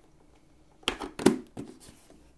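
A motorcycle system helmet being handled and turned over: a quick cluster of knocks and rubbing sounds, starting about a second in, the loudest a little after.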